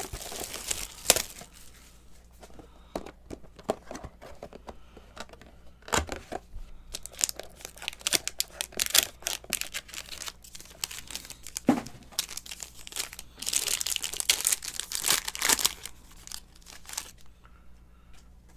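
Hands opening a box of trading cards: cardboard and packaging rustling and clicking, then a foil card pack crinkling and being torn open, loudest in a dense stretch of tearing about three-quarters of the way through.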